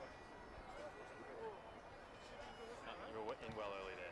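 Quiet outdoor ambience with faint, distant men's voices calling on the pitch, and a brief spoken word near the end.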